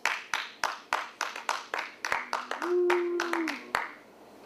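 Sparse hand clapping, about three or four claps a second, from a small audience or a single person. A long drawn-out call from one voice joins in during the second half.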